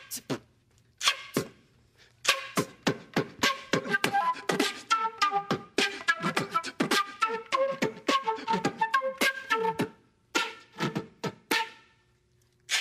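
Vocal beatboxing with a flute melody played over it. Sparse beatbox hits open the clip and pick up into a fast steady rhythm about two seconds in. The flute joins soon after with quick, changing notes that run until near the end.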